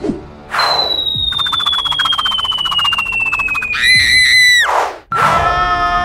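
Cartoon sound effects for a bomb's lit fuse: a whoosh, then a long falling whistle over a fast crackle, ending in a brief wavering tone. About five seconds in, a high held cry begins.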